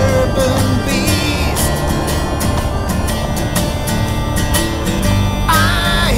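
Background music: an instrumental stretch of a song with a steady beat.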